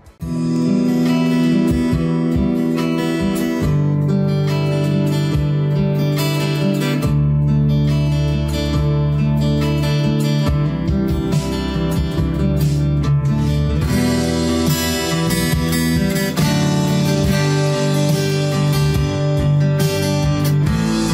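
Steel-string acoustic guitar picking chords, with the notes ringing on over one another.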